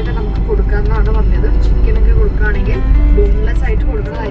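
A song with a sung vocal melody plays over a steady low rumble inside a car cabin.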